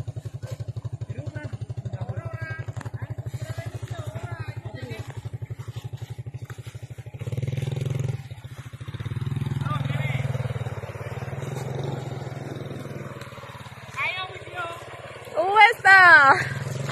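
Small motorcycle engine running close by at a steady idle, its firing pulses even; it picks up briefly about seven seconds in and again around ten seconds. Voices break in near the end.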